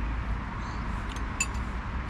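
Steady low outdoor rumble with a light haze over it, and one short metallic clink about one and a half seconds in: a spoon against the porridge bowl.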